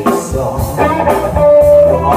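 Live rock band playing through a PA, with electric guitar and drum kit, and a single note held for about half a second near the end.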